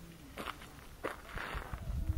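Footsteps on gravel, three steps about half a second apart.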